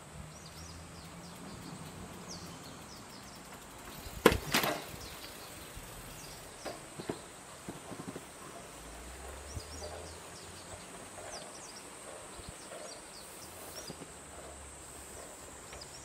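Quiet outdoor ambience with a faint, steady, high insect drone and scattered faint chirps. About four seconds in comes a sharp knock with a brief rattle, then a few small ticks.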